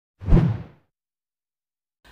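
A single whoosh transition sound effect: one short rushing swell that rises quickly and fades away by under a second in.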